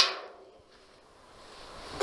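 A single sharp click at the start, dying away quickly, then near silence with a faint hiss.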